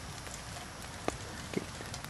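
Quiet steady background hiss, with a faint click about a second in and another near the end.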